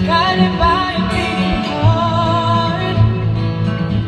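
A female vocalist singing into a microphone, amplified through the PA, holding long wavering notes over a strummed acoustic guitar, as heard live from the audience.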